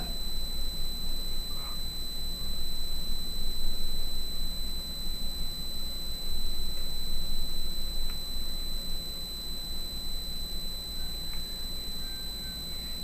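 Steady low electrical hum with a faint hiss and thin high-pitched steady tones: the background noise of the recording.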